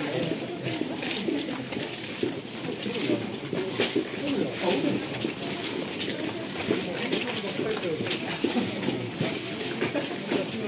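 Overlapping chatter of several people walking together, with scattered light clicks throughout.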